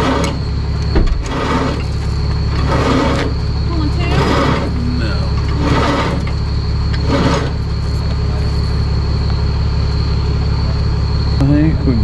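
A tow truck's engine idling with a steady low rumble. Six short noisy bursts come about every second and a half over the first seven seconds.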